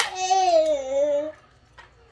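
A young child's drawn-out wordless vocal sound lasting about a second, wavering and falling slightly in pitch, then a faint click near the end.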